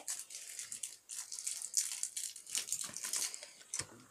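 Crinkling and rustling of a plastic candy wrapper as a Jolly Rancher hard candy is unwrapped, in an irregular run of faint crackles.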